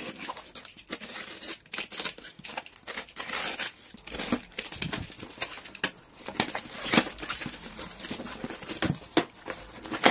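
Plastic stretch wrap being cut and torn off a cardboard shipping box, then the cardboard flaps folded back and rubbed by hand, with crinkling of the plastic-wrapped package inside. Irregular rips, scrapes and crinkles, unevenly loud.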